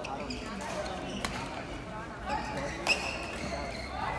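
Badminton rally: sharp racket strikes on the shuttlecock every second or two, the loudest about three seconds in, over people talking in the hall.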